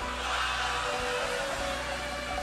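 Live Greek laïko band playing softly in an instrumental gap between sung lines, with steady bass notes underneath.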